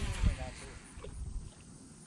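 Wind rumbling on the microphone, with a bump about a quarter second in, dying away through the second half.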